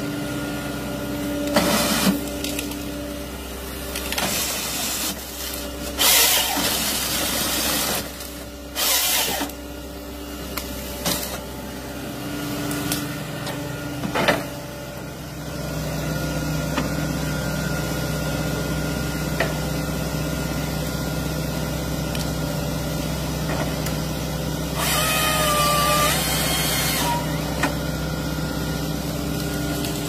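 Diesel engine and hydraulics of a Volvo tracked excavator working as a tree harvester, running steadily and picking up about halfway through. Over the engine come several short noisy bursts of the harvester head cutting and cracking wood in the first half, and a louder burst with a whine near the end.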